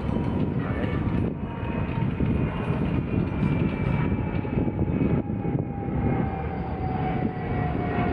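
An aircraft passing overhead, its engine tone a thin whine that slowly falls in pitch, over a steady low rumble.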